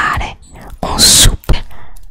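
ASMR mouth sounds made right at a microphone: short breathy voiced sounds, a loud hiss about a second in, then a sharp click.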